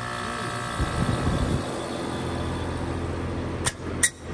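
2007 American Standard XB13 3-ton central air conditioner condensing unit running in the first seconds after startup: a steady hum from the compressor and outdoor fan, with a rough low swell about a second in as it comes up to speed. A sharp click comes just before the end.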